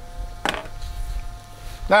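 Field-stripped pistol part set down on a plastic tabletop: one short knock about half a second in, over a steady low hum.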